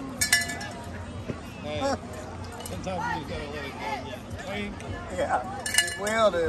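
Indistinct chatter of spectators' voices, with two sharp metallic clinks that ring briefly, one just after the start and one near the end.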